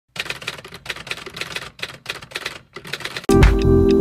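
Rapid, irregular typing clicks, about five a second, for roughly three seconds, keeping time with on-screen text being typed out. Music starts suddenly about three seconds in.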